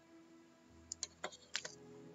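A few faint, sharp clicks at a computer: one about a second in, another shortly after, and a pair about half a second later, over a faint steady hum.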